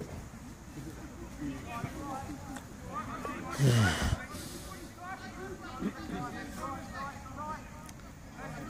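A loud sigh close to the microphone about halfway through, a breathy exhale whose voice falls in pitch. Faint voices of players calling across the pitch can be heard throughout.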